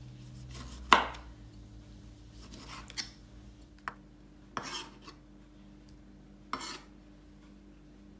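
A knife chopping a tomato on a wooden cutting board: one sharp knock about a second in, then a few softer, scattered taps and scrapes as the diced tomato is gathered and dropped into a glass bowl.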